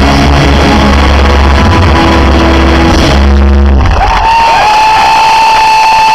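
Live rock band playing loud. About four seconds in, the bass and drums stop and one long high note rings on with a couple of small bends, the final held note of the song.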